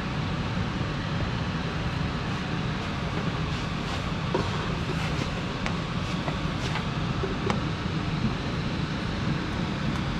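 Powered Baileigh bead roller running slowly and steadily, a low even motor hum as its tipping dies roll a joggle step around a corner in a 16-gauge aluminium panel, with a few faint ticks.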